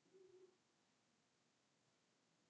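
Near silence: room tone, with a very faint short tone near the start.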